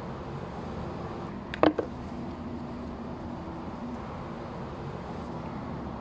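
A single sharp snip of scissors closing on a long-bean stem, a short click with a brief ring, about a second and a half in, over a steady low background hum.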